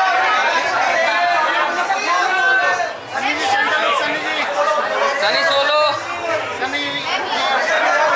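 Many voices talking and calling out over one another at once, a steady din of overlapping chatter with no single voice standing out.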